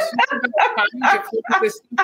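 A woman laughing in a quick run of short bursts.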